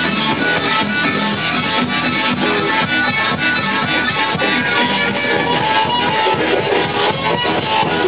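Live band playing loud in a bar: harmonica over guitar, with a steady beat.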